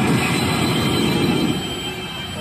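Pachinko machine playing a loud, rumbling sound effect during a reach as its on-screen number reels spin and line up three 6s for a jackpot.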